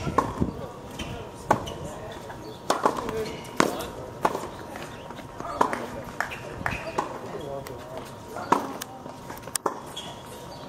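Tennis balls being struck and bouncing on a hard court, sharp irregular pops about once a second, with voices murmuring in the background.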